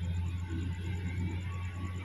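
Low, steady rumble of a distant diesel-hauled commuter train approaching along the track.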